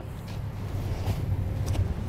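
A steady low outdoor rumble, with a few faint rustles from a fabric RV cover being rolled up on concrete.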